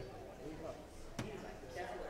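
Indistinct chatter of several people talking at once, with one sharp knock a little over a second in.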